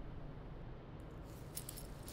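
Faint light clinking and jingling of a handbag's metal fittings as it is carried while walking, starting about a second in, over a low room hum.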